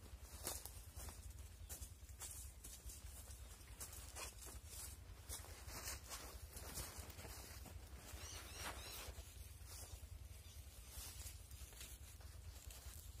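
Faint, irregular rustles and light clicks from a plastic mesh sack being handled as a snake is pushed into it and the sack is lifted, over a steady low rumble.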